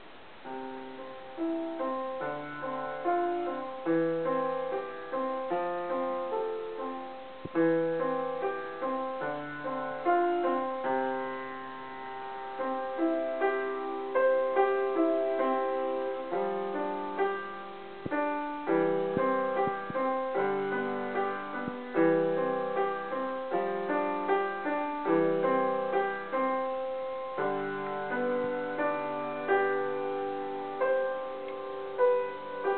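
Solo acoustic piano playing a piece: a melody line over lower accompanying notes, each note struck and left to ring as it fades.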